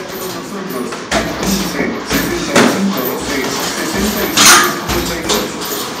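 Gloved punches and kicks landing during kickboxing sparring: a few irregular thuds and slaps with footwork on foam mats, each blow short and sharp.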